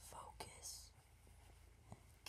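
Near silence: a faint whisper with a short hissing breath and a soft click in the first second, over low room hum.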